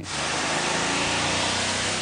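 A vehicle engine running, with a faint low hum beneath a loud, steady hiss.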